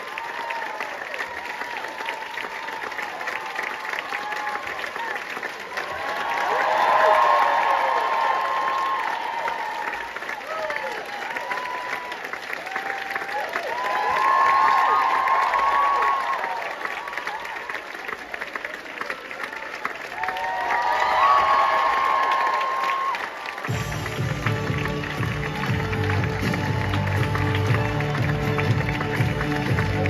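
Theatre audience applauding and cheering, the cheering swelling loudly three times, about 7, 15 and 21 seconds in. About 24 seconds in, loud band music with a heavy bass beat starts over the applause.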